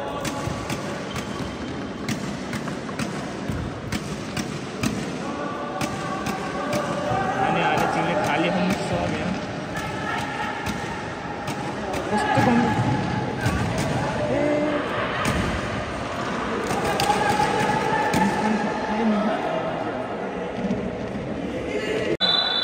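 Futsal ball being kicked and thudding on the court many times, echoing in a large indoor hall, with voices shouting and calling out over the play.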